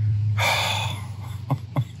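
A man's breathy exhale, a heavy sigh, over a steady low hum, with two small clicks near the end.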